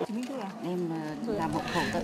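Quiet, indistinct voices in a room, lower than the narration either side: background talk with a few drawn-out syllables.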